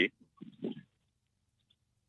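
A man's speech on a radio talk show trails off at the start, followed by a brief soft vocal murmur about half a second in, then a pause of about a second with near silence.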